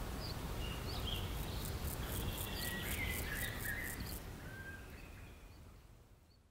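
Evening outdoor ambience: scattered bird chirps and calls, a high rhythmic insect pulsing at about four beats a second for a couple of seconds, and a low steady rumble underneath. It all fades out toward the end.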